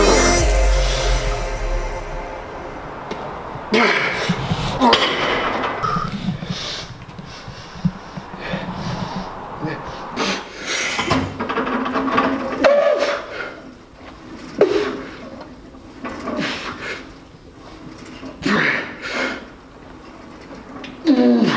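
Electronic music fading out over the first two seconds, then a man's scattered short grunts and gasps from heavy effort, with a few sharp knocks in between.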